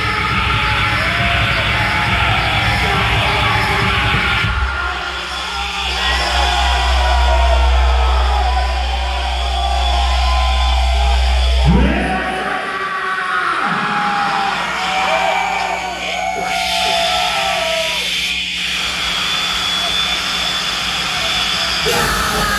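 Live harsh noise music: a dense wall of distorted electronic noise full of wavering, howling pitch sweeps, with shrieking vocals into the microphone. A heavy low drone comes in about four seconds in and drops out about twelve seconds in, where a sharp rising sweep cuts through.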